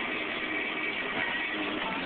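Steady hum inside a car's cabin, from the engine and road.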